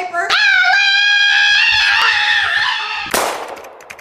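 A high-pitched voice holding one long wailing note for nearly three seconds. Then comes a short whoosh, and rapid light clicking starts near the end.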